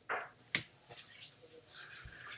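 Tools being handled at a bench vise as a bolt is clamped: one sharp click about half a second in, then faint rubbing and handling noises.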